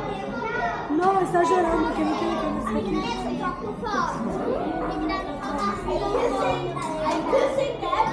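Crowd babble of many people talking at once in a busy buffet dining room, with children's voices among the adults'.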